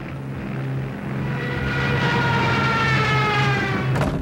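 Junkers Ju 87 Stuka dive bomber in a dive, its siren wailing over the drone of the aircraft engine. The wail swells in about a second in and then slowly falls in pitch.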